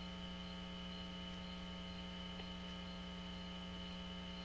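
Steady electrical hum: a low buzz with a row of higher overtones and a faint high whine above it, unchanging throughout.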